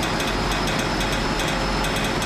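Heavy diesel engine of a mobile crane running steadily with a low hum, as cranes work to lift the toppled crane.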